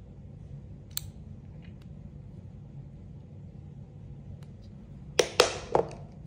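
Groove-joint pliers picked up off a whiteboard: a quick cluster of three or four knocks and clatters near the end, after a faint click about a second in. A low steady hum runs underneath.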